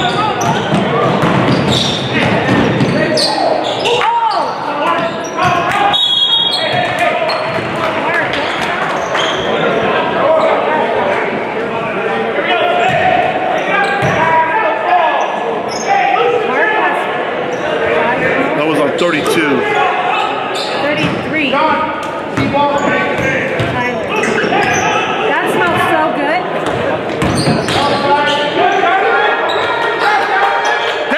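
Basketball game sounds in a large gym with a loud, echoing room: a ball bouncing on the hardwood floor and sneakers on the court, over steady crowd and player voices. A short, shrill referee's whistle sounds about six seconds in as play stops for a foul.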